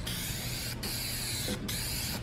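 Aerosol spray can of tint hissing as it is sprayed onto a car's side window glass in three passes, with two short breaks between them.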